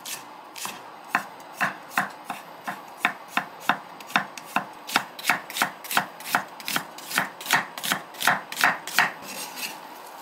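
Chef's knife slicing green onion and then onion on a wooden cutting board: a steady run of knocks as the blade meets the board, about two to three a second. The knocks quicken slightly and stop near the end.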